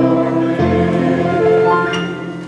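Digital keyboard playing the sustained closing chords of a hymn, changing to a new chord about half a second in and holding it.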